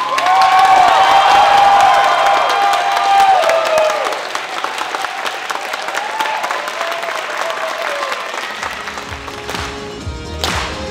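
Audience applauding and cheering, loudest in the first four seconds and then dying down, with music underneath.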